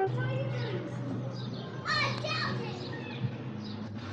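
Children's voices calling out over a steady low hum, with one louder call about two seconds in.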